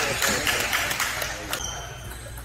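A few sharp clicks of table tennis balls bouncing, over hall chatter that fades out early on.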